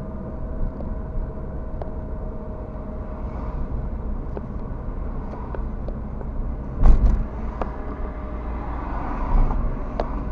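Road noise heard inside a moving car's cabin: a steady low rumble of tyres and engine with small scattered rattles. A loud thump comes about seven seconds in.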